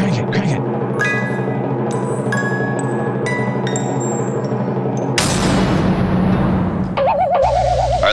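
A spooky music cue played as a jack-in-the-box sound effect: steady low tones under struck, ringing chime-like notes about once a second, with timpani. About five seconds in, a rushing swell takes over, and a warbling tone comes in near the end.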